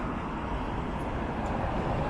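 Steady road-traffic noise: an even rumble and hiss of vehicles on a busy multi-lane road.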